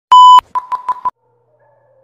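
Electronic beep sound effect: one loud, steady, high beep lasting about a third of a second, then a quick run of about five short beeps at the same pitch that fade away. A faint, lower tone slides slowly down afterwards.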